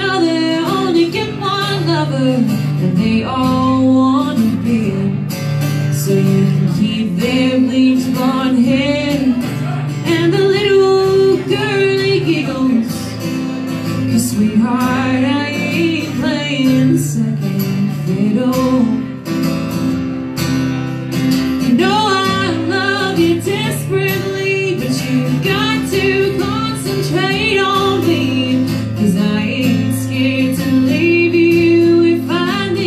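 Live acoustic country song: two steel-string acoustic guitars strummed and picked, with female vocals singing over them.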